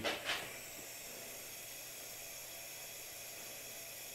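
Faint steady hiss of background room noise, with no distinct event; a short trailing breath or word ending right at the start.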